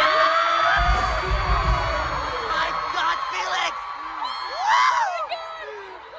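Live pop concert in an arena: fans screaming and whooping over amplified music and singing. A high note is held for the first couple of seconds over a bass beat, and sharp rising-and-falling screams come near the end before the sound fades.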